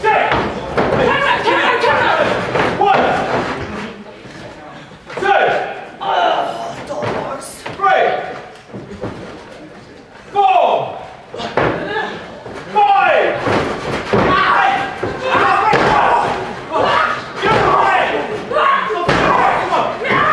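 Women's wrestling match: thuds and slams of bodies hitting the ring and canvas, mixed with loud shouts and yells, several of them falling sharply in pitch, echoing in a large hall.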